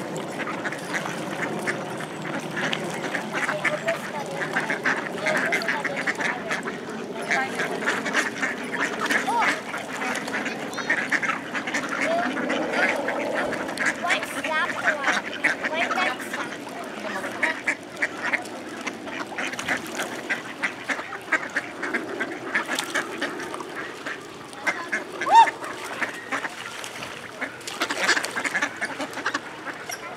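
A large flock of mallard ducks quacking continuously, many calls overlapping, as they crowd the shore to be fed.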